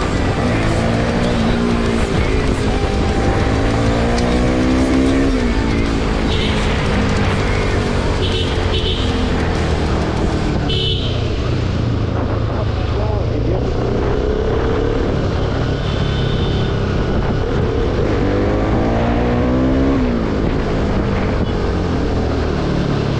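Bajaj Pulsar RS200 single-cylinder engine accelerating hard: the revs climb and drop sharply at a gear change about five seconds in, then cruise, then climb and shift again near the end. Wind noise rushes over the microphone throughout.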